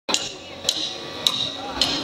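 Drummer's count-in: four evenly spaced sharp clicks, a little over half a second apart, each with a brief ring.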